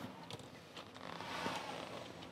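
A few faint clicks from the metal latches of a flight case being opened, with soft handling noise.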